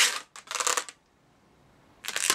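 Latex twisting balloon rubbing against itself and the fingers as its twisted bubbles are held and pressed together. A few short rubs come in the first second, then it falls nearly silent.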